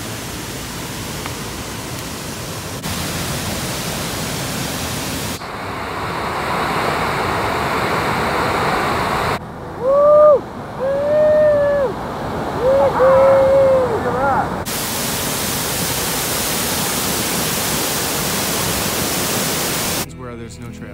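Large waterfall crashing nearby, a steady loud rush of water that jumps in level at a few cuts. About ten seconds in, a man lets out several drawn-out shouts over the roar for around five seconds.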